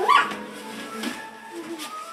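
A toddler's short, high-pitched whimpering squeal that slides upward in pitch right at the start, a child imitating a puppy, followed by quiet.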